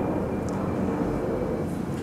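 A steady low background rumble, like distant engine noise, with a faint high steady tone.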